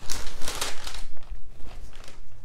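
Tissue paper crinkling and rustling as a sneaker is pulled out of its shoebox, busiest in the first second and then dying down.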